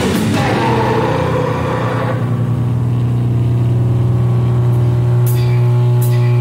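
Heavy live band ends a passage about two seconds in, leaving a distorted amplified instrument holding one low droning note that rings on steadily. A single cymbal hit lands near the end.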